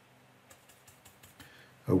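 A few faint, light clicks and taps of a paintbrush being handled at the watercolour palette, scattered and irregular. A man's voice starts to speak right at the end.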